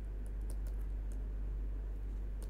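Stylus tip tapping and scratching on a writing tablet's screen as words are handwritten, heard as a string of light, irregular clicks. A steady low hum runs underneath.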